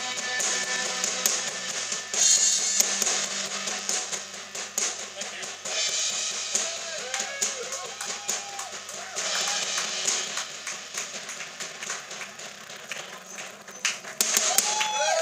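Rock band playing live: a drum kit with repeated cymbal crashes every few seconds over electric guitar.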